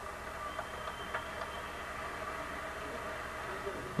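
Steady low hiss and hum with no clear source, with a couple of faint ticks about half a second and a second in.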